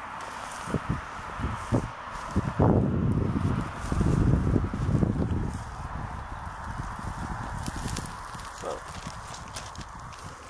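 Handling noise from a handheld camera being carried around on grass: a few knocks and footfalls, then a few seconds of low rumbling on the microphone, over a steady outdoor hiss.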